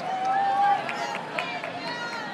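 A high-pitched voice calls out one long held shout, then a few quick sharp taps, over steady background noise from a full stadium.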